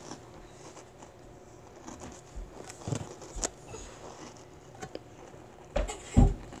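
Quiet room with a few soft thumps of a child's hands and feet on a carpeted floor, the strongest, a dull low thump, near the end as she goes down into a back bend.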